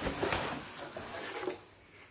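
A cardboard box being opened by hand: rustling and scraping of the cardboard lid and flaps with a couple of light knocks, dying away near the end.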